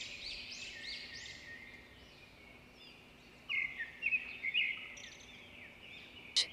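Faint bird chirps in the background: a quick series of repeated high chirps at the start that fades out, then a few short chirps about halfway through.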